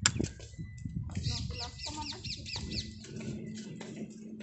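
A bird calling: a quick run of about eight repeated, downward-slurred high notes, a little over a second long, starting about a second in. Short scattered clicks and a faint steady hum lie underneath.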